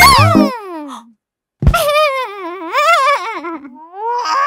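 Cartoon soundtrack: the music stops on a falling tone about a second in, then, after a brief pause and a tap, a cartoon character makes a long wordless whine that wavers up and down in pitch.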